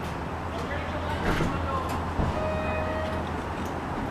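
Hydraulic elevator's doors opening at the landing, with one steady beep a little under a second long about halfway through, over a steady low hum.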